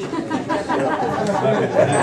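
Several people talking at once: indistinct overlapping chatter, louder than the speech around it.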